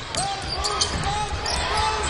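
Basketball game sound in an arena: a steady murmur of crowd noise, with a basketball bouncing on the court and a few short sharp ticks.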